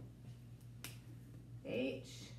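A single sharp click from a dry-erase marker being handled at a whiteboard, a little under halfway through, over a faint steady low hum.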